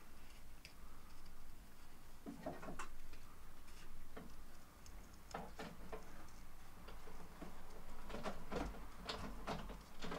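Small pointed paper snips cutting cardstock around a curved shape: short, irregular snips, coming closer together in the second half.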